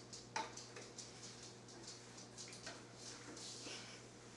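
Faint, irregular clicks of a Doberman's claws on a tile floor as the dog moves about, with a brief swish near the end as a flat mop slides across the tiles.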